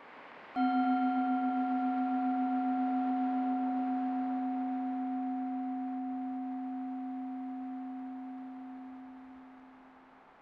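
A Buddhist singing bowl struck once, about half a second in, rung to mark a bow. Its low tone rings with a slow waver and fades away over about nine seconds.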